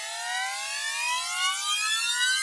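Synthesizer riser in electronic show music: one pitched tone with several overtones glides steadily upward and grows slowly louder, the build-up section of the track.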